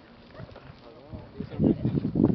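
Indistinct voices of people talking. A wavering voice sounds about halfway through, and louder talk comes near the end.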